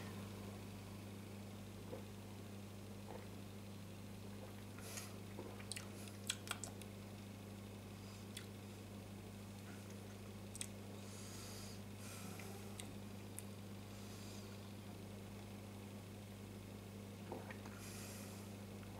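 Quiet room tone with a steady low electrical hum, broken by a few faint clicks and soft mouth sounds from sipping and swallowing beer, loudest about six seconds in.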